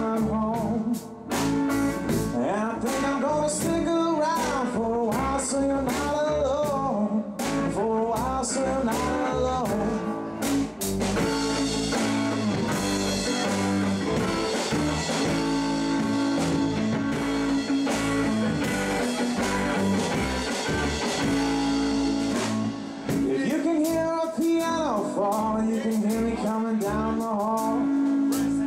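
Live blues-rock trio playing an instrumental passage: electric guitar lead with bent notes over bass guitar and drum kit, the cymbals heavier and the playing denser in the middle.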